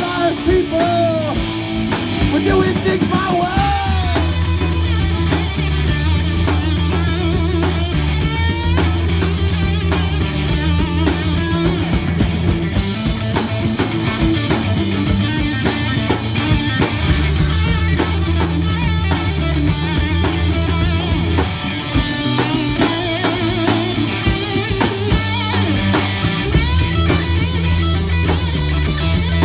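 A live rock band playing an instrumental passage: electric guitar, bass guitar and drum kit together. There are bending notes in the first few seconds, over a driving bass line and steady drumming.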